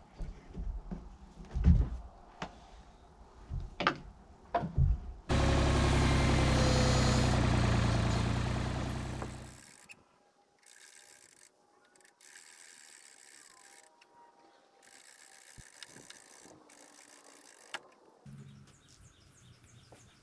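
Several knocks of wood on wood as a squared log block is set and shifted on top of a hewn log wall. About five seconds in, a loud, steady motor sound starts abruptly, runs about four seconds and dies away.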